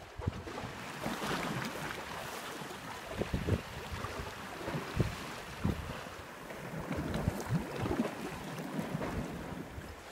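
Sea water washing and lapping against shoreline rocks, a steady wash with wind gusting across the microphone in short low buffets.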